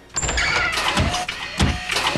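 A car running, as a cartoon sound effect, starting abruptly just after the opening and mixed with other busy effects.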